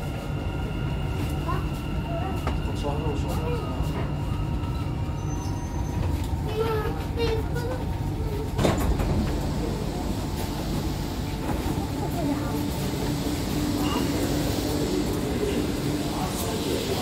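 Metro train car coming to a stop: a steady running hum with a thin whine that dies away in the first five seconds, under passengers' voices. A sharp thump comes about nine seconds in.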